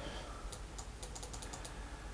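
A quick run of faint clicks from a computer mouse button, clicking a scroll-bar arrow over and over to scroll a list. The clicks start about half a second in and stop shortly before the end.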